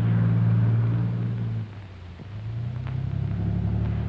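Steady low drone of vehicle engines. It drops away and settles lower a little under halfway through, then builds again.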